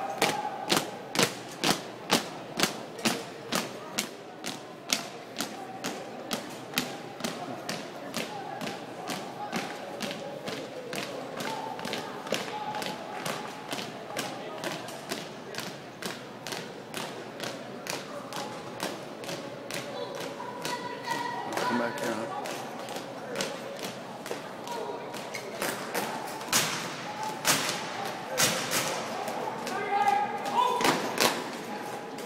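Drill team marching in step, their feet stomping together about twice a second in a steady rhythm, with a few heavier stomps near the end. Voices murmur underneath.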